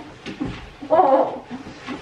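A dog's short vocalising about a second in, during rough play on the floor, after a few soft knocks and rustles.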